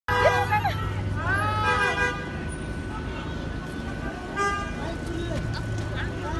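Raised voices shouting in the street, loudest in the first two seconds, with a vehicle horn sounding, over the steady rumble of traffic and idling engines.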